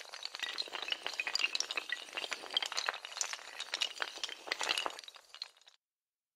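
Intro sound effect of shattering: a sharp crash, then a dense run of tinkling and clinking fragments like breaking glass, cutting off just before the end.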